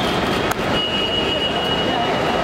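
Busy curbside ambience: indistinct overlapping voices over a steady traffic hum, with a brief click about half a second in and a thin, steady high-pitched tone through the second half.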